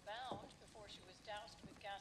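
A faint, high-pitched voice in short, wavering sounds, repeated several times about half a second apart.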